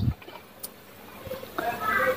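Quiet room tone in a pause between spoken phrases. Near the end comes a faint, high-pitched animal call.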